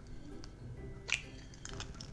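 A single sharp crack about a second in as a lime-water-preserved chicken egg is broken open over a plate, followed by a few faint ticks, over soft background music.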